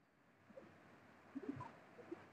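Near silence: faint room tone with a few soft, short low calls in the background, about a second apart.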